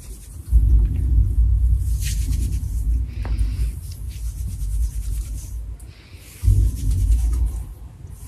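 Low rumbling, rubbing noise from hands massaging foam through hair and over the scalp, in two stretches: a longer one starting about half a second in and a shorter one near the end.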